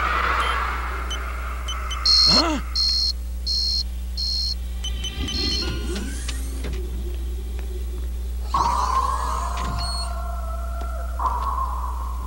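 Electronic door-keypad beeps in a cartoon soundtrack: five short, high beeps over a few seconds, over a low steady hum. A longer sustained sound follows near the end.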